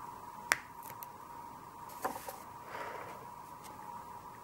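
Oil pastel stick tapping and scraping on paper as palm fronds are dabbed in. A sharp click comes about half a second in, a few softer taps around two seconds, then a short scratchy stroke.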